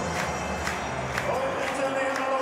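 Football stadium crowd noise, a steady mass of cheering and singing from the stands. About a second and a half in, a voice comes in holding one long note.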